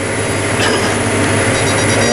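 Steady drone of a tractor engine under load at about 2,000 rpm, heard inside the cab while pulling a Lemken Heliodor disc harrow through corn stubble at about 10 mph.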